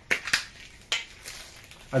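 Clear plastic wrap crinkling as it is peeled off a Funko Soda collectible can: a few sharp crackles in the first second, then fainter rustling.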